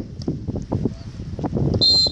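A referee's pea whistle blown once near the end: a short, shrill, steady blast over scattered noise from the pitch.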